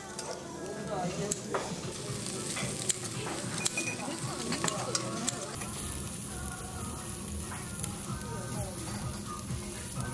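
Pork sizzling on a wire-mesh grill over charcoal: a steady hiss that grows louder about two seconds in, with scattered light clicks of tongs and dishes.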